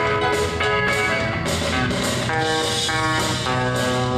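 Electric guitar, a Telecaster-style solid-body played through an amplifier, taking an instrumental break between sung verses, with drums keeping a steady beat.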